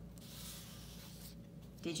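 Brief, faint rubbing of something against paper: an even scratchy hiss lasting about a second.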